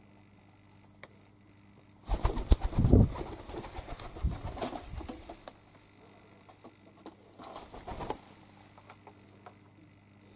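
Feral pigeon's wings flapping close by in a rapid flurry of beats, starting about two seconds in and lasting a few seconds, then a second shorter flurry near the end.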